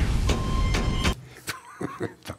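Loud, dense television intro sting over the show's title graphic. It cuts off suddenly about a second in, leaving quiet studio room tone with a couple of small clicks.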